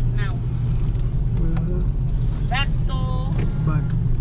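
Steady low drone of a moving car's engine and tyres heard from inside the cabin, with brief voices over it.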